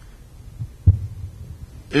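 Handling noise from a handheld microphone being passed from one person to another. There is one sharp low thump about a second in, then a faint low rumble as the microphone is held.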